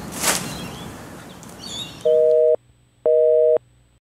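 Telephone busy signal: two half-second beeps of a steady two-tone chord, half a second apart, starting about two seconds in.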